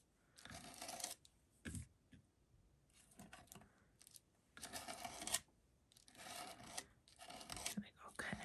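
Palette knife scraping paste across a stencil on a paper tag: five or six short, soft scraping strokes with brief pauses between them.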